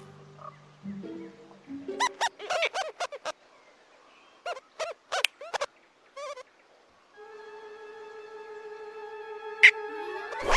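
Cartoon rodents' squeaky chittering calls, in short quick bursts about two seconds in and again about five seconds in, over soft orchestral music. A long held musical note runs through the last three seconds.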